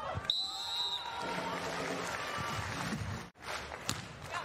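A referee's whistle blows briefly just after the start, then stadium crowd noise with a voice over it. The sound cuts out abruptly a little past three seconds in, and a sharp volleyball hit comes near the end.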